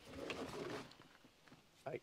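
Brief rustling and handling noise, about a second long, as a tool is pulled out of the tractor cab, with a faint low cooing or humming tone under it; quiet after.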